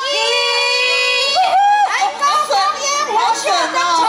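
A woman's voice over microphones holds one long high call for a little over a second, then breaks into excited calls that swoop up and down in pitch.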